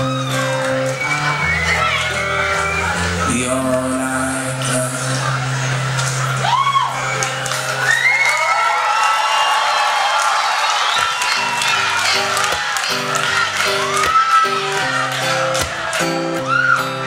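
Live acoustic guitar with the audience cheering and whooping over it. About ten seconds in, the long held notes stop and shorter, more rhythmic picked notes begin.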